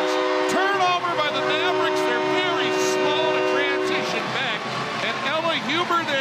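Arena goal horn sounding a steady chord of several tones, held for about four seconds after a goal and then cutting off, over crowd cheering and shouting.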